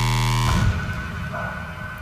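Electronic music: a held synthesizer chord that stops abruptly about half a second in, leaving a quieter steady high tone over a low rumble.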